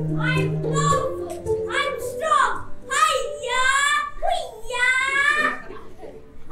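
A child's voice singing a few long held notes with no clear words, after piano music that stops about a second in.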